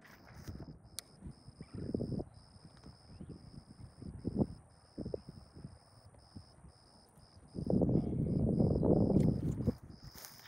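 Wind buffeting the microphone and footsteps in grass as someone walks through a field, in short low rumbles, with a longer, louder rumble of wind noise near the end. A faint high tone pulses on and off underneath.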